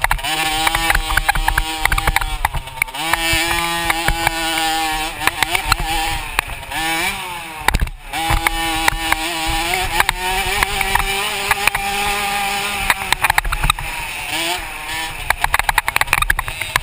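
Dirt bike engine revving hard on a motocross track, its pitch climbing and dropping again and again through throttle and gear changes, with a brief drop-off about eight seconds in. Wind rushes on the bike-mounted microphone throughout.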